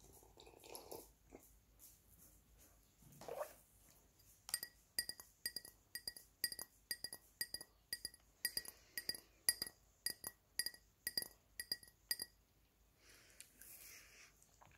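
Fingernails tapping on a drinking glass close to the microphone: a steady run of bright ringing clinks, about two a second, lasting around eight seconds. Before it come a couple of soft gulps from drinking.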